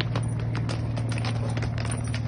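A dog's booted paws clicking and tapping on stone paving as it walks awkwardly in its boots: quick, uneven steps, several a second, over a steady low hum.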